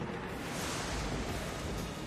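Online slot game sound effect: a noisy rumbling whoosh with a deep low end, marking the switch from the free-spins award screen into the bonus round.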